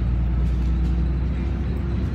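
Bus engine and running noise heard from inside the passenger cabin: a steady low rumble with a faint steady hum above it.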